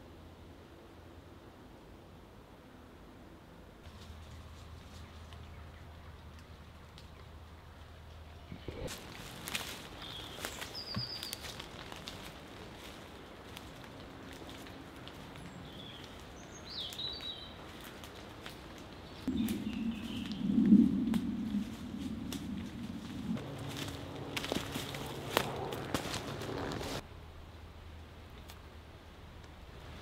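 Quiet woodland ambience, then from about nine seconds in, footsteps through leaf litter and twigs with a few short bird chirps. A louder low rumble lasts a few seconds past the middle.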